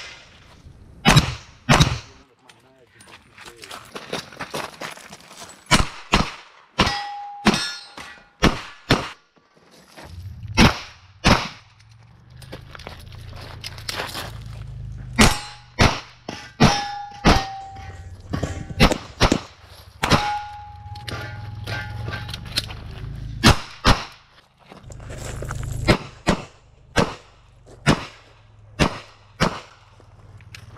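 Revolver being fired rapidly in strings of several shots, with short pauses between the strings. A few shots are followed by the brief ring of a hit steel target.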